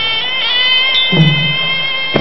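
Traditional pradal serey ring music: a sralai reed oboe playing a held, nasal melody that slides up in pitch about half a second in, over a drum beat with one stroke a little past one second.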